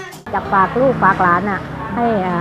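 Thai klong yao (long drum) folk music with tambourine-like jingles and a held reed note cuts off abruptly about a quarter second in. A woman then talks over faint background music.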